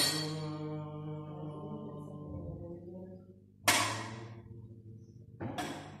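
Live experimental music: a resonant object is struck, and its ringing, many-toned sound fades slowly. Two more sharp hits follow, a little under two seconds apart, near the end, all over a low steady hum.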